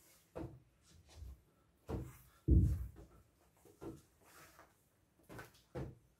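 Hands tapping inflated party balloons to keep them aloft: irregular dull thuds, about seven in a few seconds, the loudest about two and a half seconds in, with a small-room echo.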